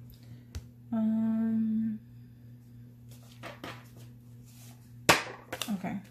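A woman humming one steady 'mmm' note for about a second. Near the end comes a sharp, loud sound, followed by a few small clicks.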